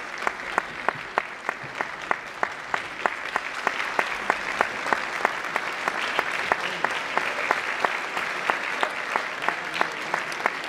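Audience applauding in a hall, with one nearby person's sharp claps standing out about three times a second over the steady clapping of the crowd.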